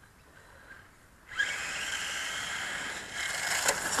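About the first second is near silence, then a radio-controlled model car is heard running steadily as it drives across a dirt track.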